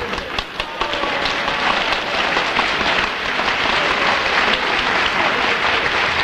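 Studio audience applauding: dense clapping that swells within the first second, then holds steady.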